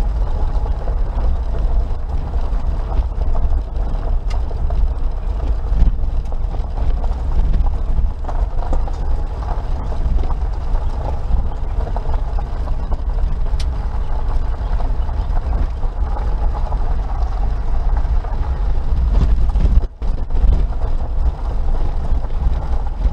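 Suzuki Jimny Sierra JB43 heard from inside the cabin while driving on a gravel road: a steady low rumble of engine and tyres on loose gravel, with occasional small clicks and rattles. The sound drops out for an instant near the end.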